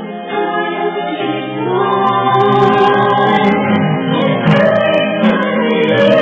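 Live vocal group singing together with band accompaniment, growing fuller and louder about a second in.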